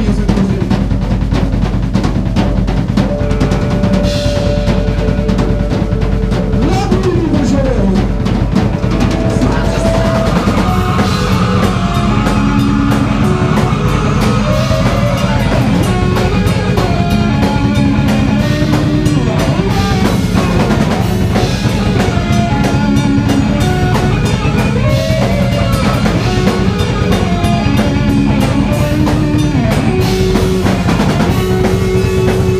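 Heavy metal band playing live: drum kit with bass drum, electric guitars and bass guitar, loud and continuous, with guitar lines that bend and slide in pitch.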